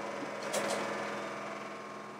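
Steady machinery hum with several held tones from the ship's engine room below decks, and a brief click or knock about half a second in.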